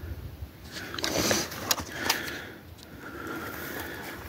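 Footsteps crunching and scraping on loose shale and gravel, with short bursts of breathing and some low wind rumble on the microphone.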